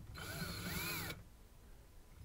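19.2-volt cordless drill run in one short burst of about a second, its motor whine rising and then falling in pitch before it stops, while drilling a pilot hole through the dresser's solid wood frame.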